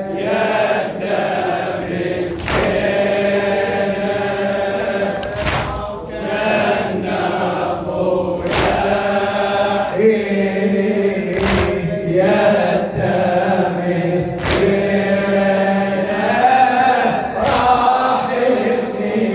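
A male radood chanting a Shia mourning lament (latmiya) into a microphone, with a group of male voices joining in, and a sharp beat about every three seconds.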